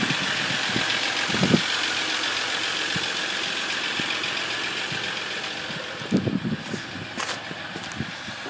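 Ram 1500's 3.0-litre EcoDiesel V6 turbodiesel idling: a steady hum and hiss that grows gradually fainter, dropping off more after about five seconds, with a single click near the end.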